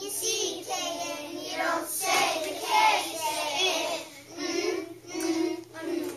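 A class of young children chanting a phonics chant together in a sing-song voice.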